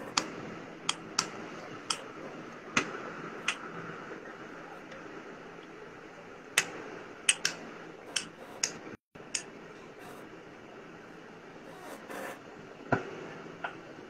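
A dozen or so sharp, irregular taps and clicks over a steady background hiss, with a very short dropout of all sound about nine seconds in.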